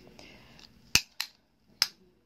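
Three sharp clicks from the costume bib necklace being handled: one about a second in, a weaker one just after, and another near the end.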